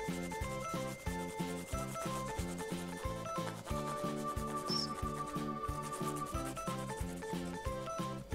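A crayon rubbed in quick back-and-forth strokes over corrugated cardboard, colouring it in. Light background music with a steady beat plays underneath.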